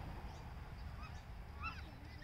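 Bird calls: short calls that rise and fall in pitch, one about a second in and a quick cluster near the end, over a steady low rumble.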